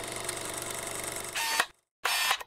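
Sound-effect film reel running with a rapid, even mechanical clatter, then a short, brighter camera-mechanism whirr with a faint tone near the end that cuts off suddenly into a moment of silence.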